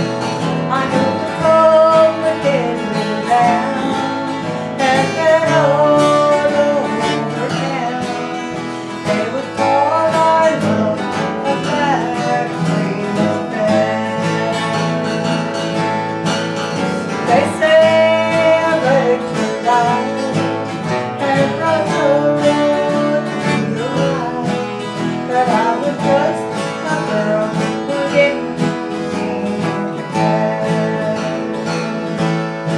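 Instrumental break in a slow country song: acoustic guitar chords, with a lead melody of sliding notes over them.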